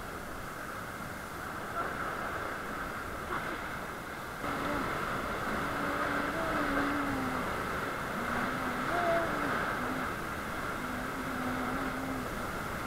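Rushing whitewater of a river rapid around an inflatable raft, a steady rush that grows louder about four seconds in. From then on a voice is heard over the water in drawn-out tones.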